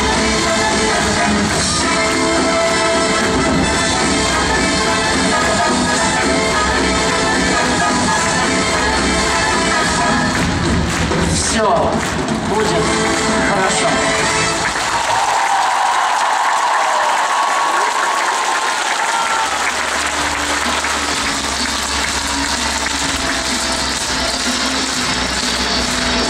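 Music played over an arena sound system for about the first half, giving way around twelve to fifteen seconds in to an audience applauding and cheering in a large hall.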